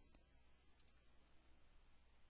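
Near silence: room tone with a couple of faint computer mouse clicks.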